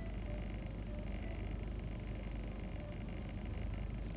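Quiet car-cabin background: a steady low rumble with no music or speech.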